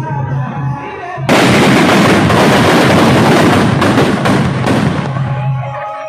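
Music with a steady drum beat, cut into about a second in by a sudden, loud, dense crackle of firecrackers going off inside a burning Ravana effigy: rapid bangs running together for about four seconds, then fading back under the music.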